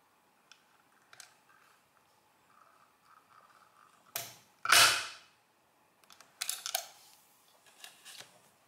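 Printing mechanism of a Monforts industrial counter worked by its hand lever: a click about four seconds in, then a loud, sharp snap as the print hammer strikes the paper against the ink ribbon and number wheels. A quick run of clicks follows about a second and a half later.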